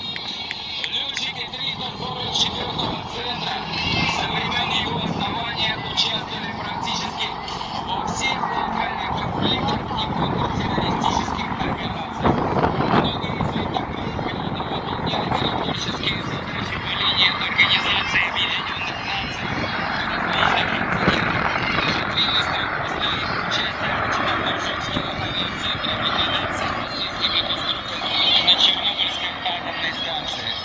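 A formation of four military attack helicopters flying overhead, their rotors and engines making a steady, continuous noise, mixed with voices.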